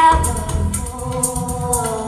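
Live band music with a woman's lead vocal that slides up into a long held note at the start, over a bass line and rhythmic high percussion.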